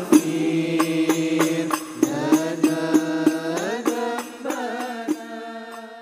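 Background music: a held melodic line over a regular beat of about three hits a second, fading out over the last couple of seconds.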